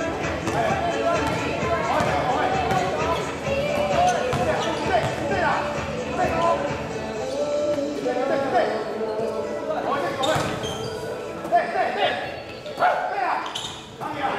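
Basketball bouncing on an indoor court floor during a game, with sneakers squeaking and players' voices in the hall.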